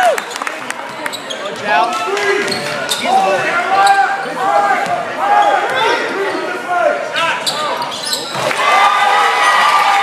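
Basketball sneakers squeaking on a hardwood gym floor in many short, high chirps during play, with the ball bouncing on the court.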